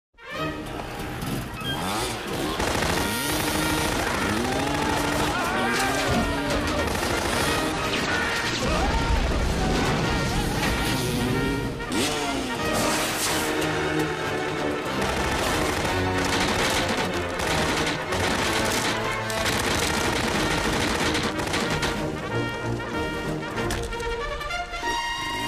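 Dirt bike engine revving in repeated rising and falling sweeps over film score music, with rapid crackling from the motor.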